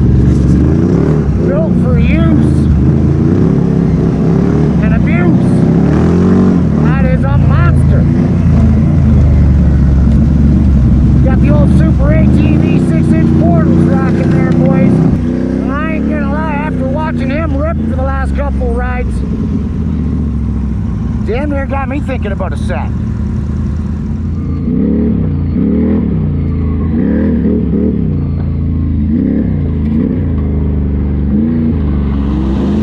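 ATV engine running under throttle on a rough dirt trail, its revs rising and falling over and over. The level drops about halfway through.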